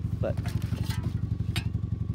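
Vehicle engine idling with a steady low, pulsing rumble. A couple of light clicks sound over it.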